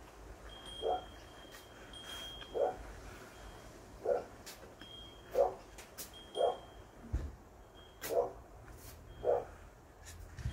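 A dog barking in a steady run of single short barks, one about every second and a half, about seven in all.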